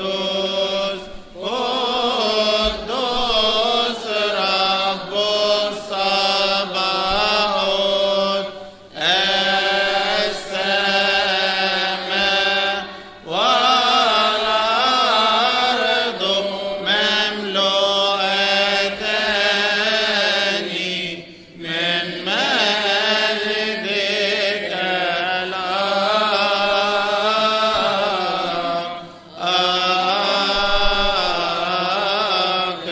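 Coptic liturgical chant: voices singing a long, ornamented hymn melody in sustained, wavering lines, with short breaks for breath every few seconds.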